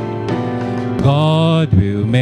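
A man singing a slow worship song into a microphone over sustained instrumental chords, his voice coming in about a second in.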